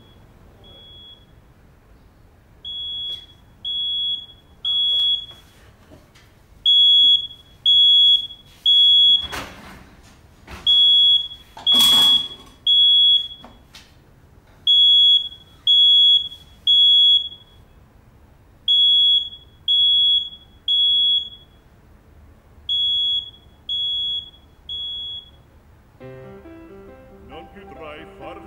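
Smoke alarm beeping in the three-beep emergency pattern: groups of three high half-second beeps repeat about every four seconds, and the first group is quieter. The alarm has been set off by a cake left to burn.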